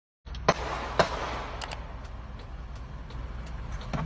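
A vehicle engine running with a steady low rumble. Two sharp, loud bangs come half a second apart about half a second in, followed by a couple of faint clicks.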